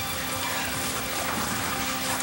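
Steady, even rushing noise of heavy rain.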